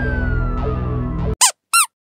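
Comic editing sound effects over background music: a whistle-like tone slides steadily down in pitch, and the music cuts off about a second in. Two short squeaky chirps follow, then silence.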